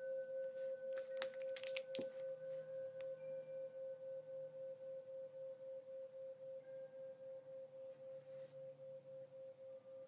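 A struck ringing tone held on one steady pitch, its loudness pulsing about four times a second. A few sharp clicks sound about one to three seconds in.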